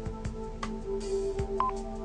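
Background music, with one short keypad beep from a cordless landline handset being dialled about one and a half seconds in.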